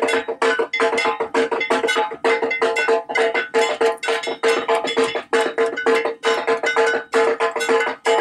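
A bell-metal gong (kansar) beaten in fast, even strokes, each stroke ringing on one steady pitch, as played in Durga Puja worship.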